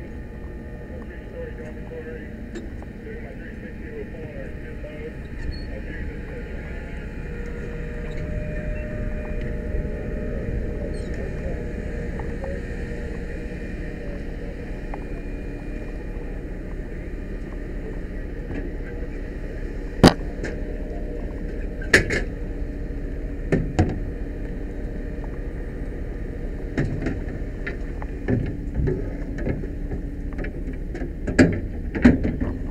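Fire truck engine running steadily under the aerial ladder, with a hum that grows a little louder about a quarter of the way in. Several sharp knocks come in the second half, loudest about two-thirds of the way through.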